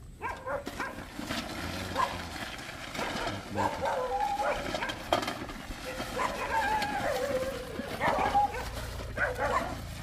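Dogs barking and yelping on and off, the calls irregular and bending in pitch.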